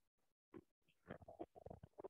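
Near silence: classroom room tone with a few faint, muffled sounds, one about half a second in and several in the second half.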